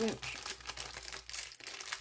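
Clear plastic bag crinkling as it is handled and turned over, a run of small irregular crackles.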